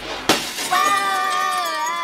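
A cartoon glass-shattering crash about a quarter of a second in, followed by a long held high-pitched scream.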